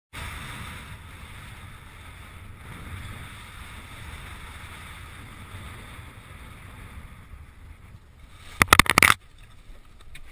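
Wind buffeting the microphone over a rushing hiss of water while wing foiling; the hiss thins out after about seven seconds. Near the end comes a brief cluster of loud, sharp knocks, the loudest sound here.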